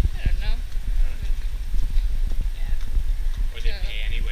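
Footsteps of people walking on a paved street, with irregular knocks from the handheld camera and a steady low rumble of wind on the microphone.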